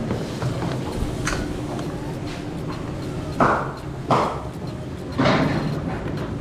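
Tea hissing and sizzling as it boils up in a red-hot clay cup for tandoori chai, in three sudden bursts in the second half, each fading away, the last the longest.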